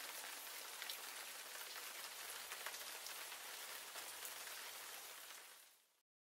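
Faint rain: an even patter with scattered drop ticks, left on its own after the song's last notes and fading out near the end.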